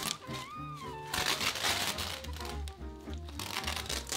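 Background music, with several bursts of velcro ripping and nylon fabric rustling as a softbox's front diffuser panel is peeled away from its hook-and-loop edge.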